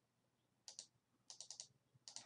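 Faint clicks of a computer mouse: a pair of clicks under a second in, then four quick clicks about half a second later.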